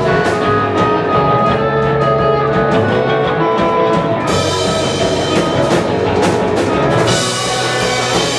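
Live punk rock band playing loud: distorted electric guitars over a full drum kit, with the drumming opening up onto the cymbals about halfway through.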